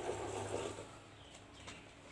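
Cola poured from a bottle splashing into a large plastic jar of mixed soft drinks, the stream stopping within the first second; then a couple of faint clicks.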